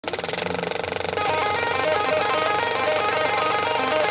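Old film projector clattering rapidly and evenly, with a repeating melody of short notes over it as the song's intro begins.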